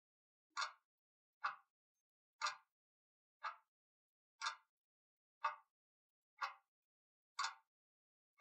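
Clock ticking: eight short, sharp ticks, one each second, keeping time with a seconds countdown.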